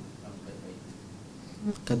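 Faint, distant speech, a voice heard off the microphone. A man's voice comes in loud and close near the end.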